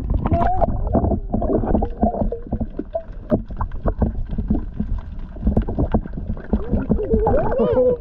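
Muffled underwater sound from an action camera's microphone held below the surface: water sloshing and gurgling against the housing with knocks and bubbles, dull and cut off above a low pitch.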